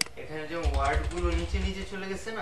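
A single sharp mouse click, then computer keyboard typing as a word is entered into a search box.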